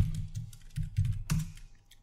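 Computer keyboard keystrokes: a few separate key presses, a loud one at the start and two more about a second in, as a terminal command is finished and entered; the typing stops about three-quarters of the way through.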